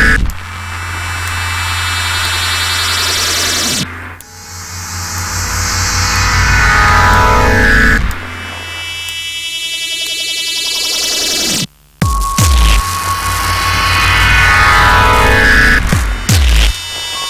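IDM electronic music: synthesizer phrases repeating about every four seconds, each sweeping downward over a low bass drone. Near the three-quarter mark the sound cuts out for a moment and comes back with deep bass thumps.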